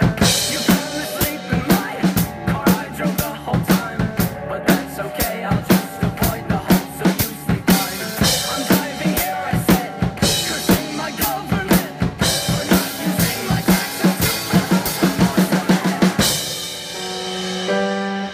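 Acoustic drum kit played hard and fast along with the song: rapid, dense kick, snare and cymbal hits through an instrumental drum break. The drumming stops about 16 seconds in, leaving a sustained pitched note from the song.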